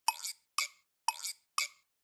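Quiz 'thinking time' sound effect: a light, plucky plop-tick repeated about twice a second, counting down the wait before the answer is revealed.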